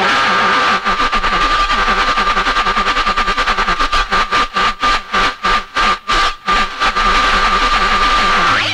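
Breakdown in a 1990s techno/hardcore DJ set. The kick drum and bass drop out, leaving a steady high synth tone over a fast, stuttering, chopped texture that gets choppier in the middle.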